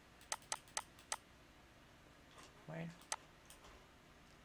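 Computer mouse clicks: four quick sharp clicks within about a second, then a brief murmured voice and one more click.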